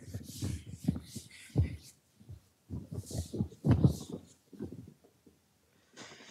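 Chalkboard being wiped with a cloth duster: irregular rubbing strokes with soft low thumps against the board, the strongest a little under two seconds in and near four seconds in.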